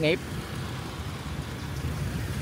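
Steady, even street noise of motorbike traffic and road rumble, heard from a moving vehicle.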